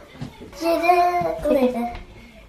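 A young child's voice singing a drawn-out note for about a second, then dropping to a lower note near the end.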